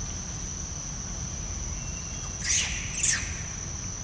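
Two short, high-pitched animal calls about half a second apart, a little past the middle, over a steady high insect drone.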